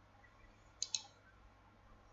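Computer mouse double-click: two quick sharp clicks a little under a second in.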